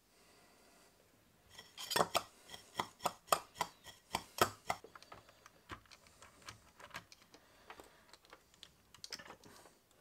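Handling clatter from the opened Xbox One power brick's circuit board and plastic housing: a dense run of sharp clicks and light knocks from about a second and a half in to about five seconds, then sparser, fainter ticks.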